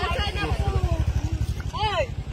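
An engine running steadily with a low, evenly pulsing throb, heard under voices.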